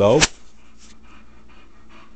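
Boxer dog panting softly with its mouth open. There is a single sharp click about a quarter second in.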